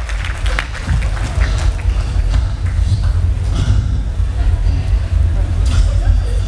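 A man's voice amplified through a stage PA, performing a song bit, over a heavy, constant low rumble.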